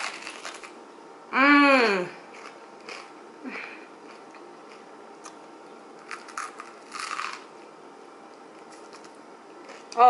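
A woman's hummed 'mmm' of delight, rising then falling in pitch, about a second and a half in, amid the chewing of a toasted sandwich. A few short crisp crunches from the chewing come around four seconds in and again near seven seconds.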